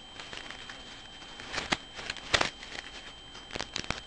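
Handling noise of a plastic iPod touch case and its clear plastic packaging: light rustling, with a few sharp clicks, a pair about a second and a half in, another pair near the middle and a cluster near the end.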